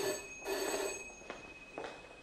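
Telephone ringing: two short rings in the first second, then a faint lingering tone that dies away.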